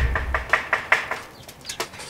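Knocking on a metal security screen door: a quick run of about half a dozen sharp raps in the first second, then a couple of fainter taps.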